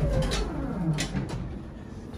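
Elevator door sliding open over a low rumble, with a whine that falls in pitch over about a second and a sharp click about a second in.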